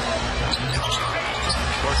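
Arena crowd noise during live NBA play, with a basketball bouncing on the hardwood court as a few short knocks.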